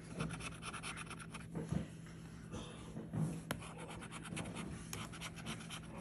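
Metal bottle opener scraping the scratch-off coating from a paper lottery ticket in quick repeated strokes.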